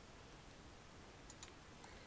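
Near silence: room tone, with a couple of faint computer mouse clicks about one and a half seconds in.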